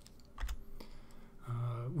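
Two quick clicks of a computer keyboard key, about a third of a second apart, as the slide is advanced.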